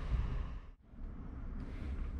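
Low, steady background room noise with no distinct event. It briefly drops out to near nothing about three-quarters of a second in.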